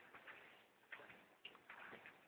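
Near silence broken by a few faint, irregularly spaced clicks and taps.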